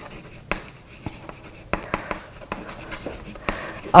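Chalk writing on a blackboard: a string of irregular light taps and short scratchy strokes.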